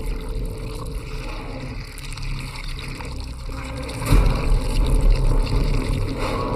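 Cinematic sound design: a deep low rumble with noisy texture underneath, swelling louder from about four seconds in.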